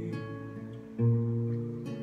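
Acoustic guitar playing chords that ring on, with a new, louder chord strummed about a second in.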